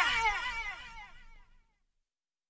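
The final note of a drum and bass track: a pitched, wavering synth-vocal tone slides steeply down in pitch and fades out over about a second and a half.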